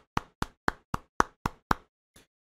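One person clapping slowly and evenly, about seven sharp claps at roughly four a second, applauding.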